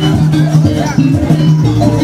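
Loud jaranan accompaniment music from a gamelan-style ensemble: a melody of short, held low notes that step from pitch to pitch every half second or so, with drums and percussion beneath.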